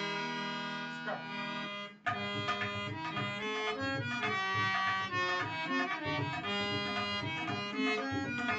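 Harmonium holding sustained chords, then after a brief break about two seconds in, the tabla comes in with quick strokes in drut (fast) teentaal while the harmonium plays a melody over it.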